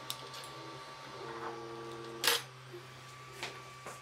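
Creality Ender-3 V2 3D printer starting to print. Its fans hum steadily while the stepper motors give off a whine of steady tones as the axes move, with a sharp click a little over two seconds in and lighter ticks near the end.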